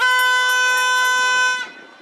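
Air horn sounding one steady blast of about a second and a half, then cutting off, with the ball on the centre spot ready for kick-off.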